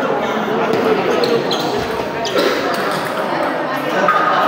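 Table tennis rally: the ball clicking sharply off the rackets and the table several times in quick succession, over the steady background chatter of a crowded hall.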